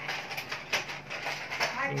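Light clicks and taps of a wainscoting moulding strip being handled and pressed against a door panel, with voices in the background.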